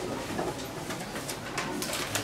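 Low murmured voices in a small meeting room, with papers rustling several times.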